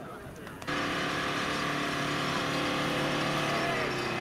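A vehicle engine running steadily and strongly. It starts abruptly about two-thirds of a second in, and its pitch sags a little near the end.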